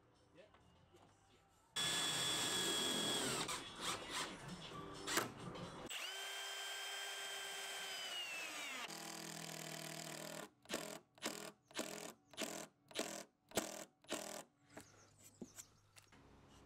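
Milwaukee M18 cordless drill driver driving screws into plywood. The motor whirs steadily twice and winds down each time, then runs in short bursts about twice a second.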